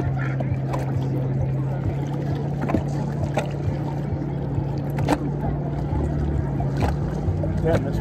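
A motor running at a steady low pitch throughout, with water lapping against the boat's hull and a few short sharp slaps.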